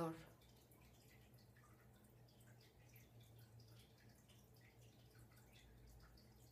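Near silence: faint room tone with a steady low hum and scattered faint ticks.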